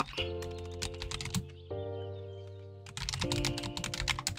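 Typing on a computer keyboard: a quick run of keystrokes, a sparser stretch in the middle, then another run near the end, over background music of held chords.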